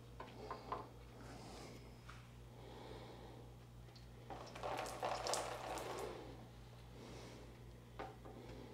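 Water poured from a cup onto a car's painted body panel, splashing and running off for about two seconds starting a little past the middle. It is faint, over a low steady hum.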